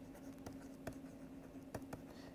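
Faint taps and scratches of a stylus writing on a pen tablet: a handful of light clicks, over a steady low hum.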